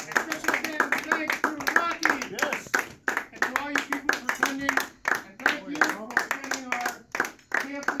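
A quick, uneven run of sharp claps from a group, with a raised voice calling out over them.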